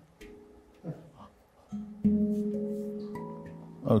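Steel handpan tapped by a first-time player: a few scattered single notes, faint at first. About two seconds in comes a louder low note that rings on and slowly fades, and two higher notes are struck over it near the end.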